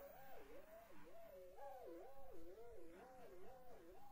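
Faint warbling tone, stacked in several parallel pitch-shifted copies that waver up and down about twice a second: a logo's sound track run through layered audio effects.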